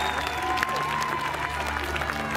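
Crowd clapping and cheering, with music playing underneath.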